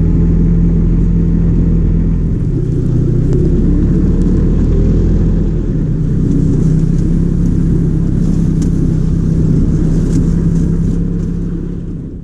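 Snowmobile engine running steadily while under way.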